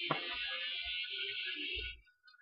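Rustling of a bagged comic book being handled and swapped, a steady crinkly hiss that cuts off near the end, with a sharp knock just after the start and a few dull thumps.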